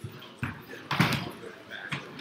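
A few separate knocks and thumps with some faint, indistinct voice sound, ending in a sharp click near the end.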